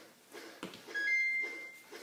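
Flappy Bird game sound effects: faint wing-flap swishes about three a second, then about a second in the two-note score chime, a short lower beep followed by a higher one held for most of a second.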